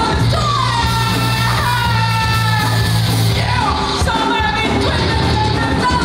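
Live rock band playing loudly: a singer belts a vocal line in long held notes, several sliding downward, over electric guitar, bass and drums.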